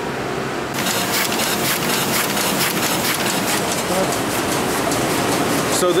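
Four-colour offset printing press running: a fast, steady mechanical clatter of rapid ticks. It starts about a second in, after a quieter hum.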